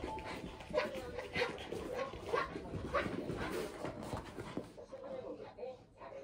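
A small dog's excited yips and whines during play, short calls repeating about every half second to a second.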